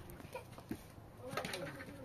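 A few short bird calls.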